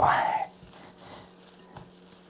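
Hands kneading ground beef and pork mince in a glass bowl: faint, soft squelching.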